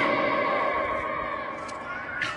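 A single voice calling a long, high, held 'Allahu Akbar' cry. The sustained note fades slowly.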